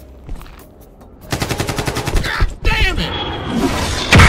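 A burst of rapid automatic gunfire that starts about a second in and runs for just over a second, with a shout or scream over the end of it.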